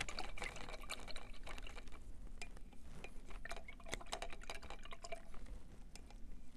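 Paintbrush being swished and rinsed in a glass jar of water, faint, with a run of light irregular clicks and taps.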